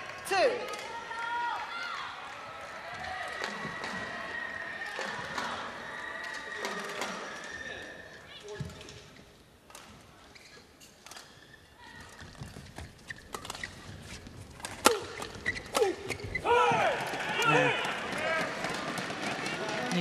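Badminton hall between and during a point: voices and shouts at first, a quieter spell, then a rally of sharp racket strikes on the shuttlecock from about twelve seconds in, with the loudest hit near fifteen seconds. Shouts follow as the point is won.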